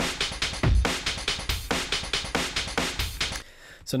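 Chopped drum breakbeat played by TidalCycles: eighth-note slices of the akuma1 break sample, picked at random and stretched to fit one eighth of a cycle each, looping at 140 bpm with heavy low drum hits and dense cymbal hits. The beat stops about three-quarters of the way through.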